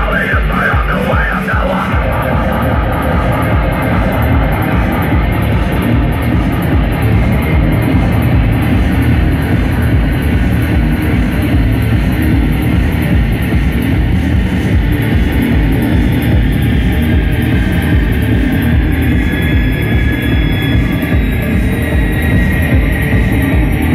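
A live rock band playing loud: distorted electric guitar over keyboard synths and a steady beat. A shouted vocal is heard in the first second or two, after which the music goes on without it.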